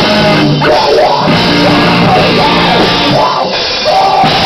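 Live rock band playing loud, with electric guitar, drums and vocals. The sound briefly drops back near the end.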